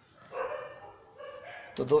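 A dog barking twice in the background, once about half a second in and again just before the end, with a man's voice starting a word at the very end.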